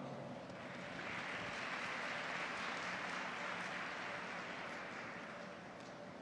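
Audience applauding, swelling about a second in and slowly fading toward the end.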